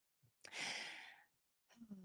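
A woman's sigh: one breathy exhale about half a second in that fades away over under a second.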